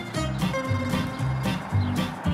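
Background film-score music: held melody notes over a bouncing, rhythmic bass line.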